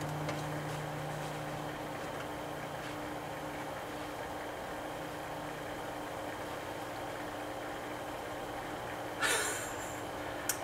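Steady low electrical hum with a faint even hiss, with a brief rustle near the end.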